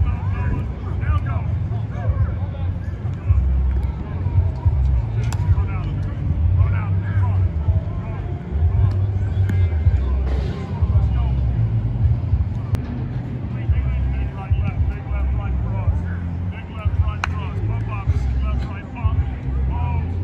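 Wind rumbling on the microphone in uneven gusts, under distant shouts and chatter of football players and coaches, with a few sharp knocks.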